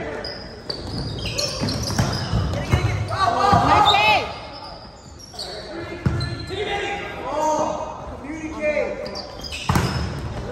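Indoor volleyball rally in an echoing gym: sharp slaps of the ball off players' hands and arms, several hits in all, with players shouting calls. The hardest hit comes near the end as a player attacks the ball at the net.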